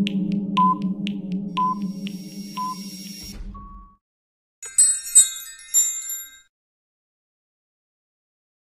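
Countdown timer sound effect: a beep about once a second, three times, with fainter ticks between, over a low steady hum, fading out about four seconds in. Then a short bright twinkling chime lasts about a second and a half.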